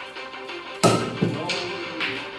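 A pool cue striking the cue ball with a sharp clack about a second in, followed by two lighter knocks of billiard balls hitting each other. Steady background music plays throughout.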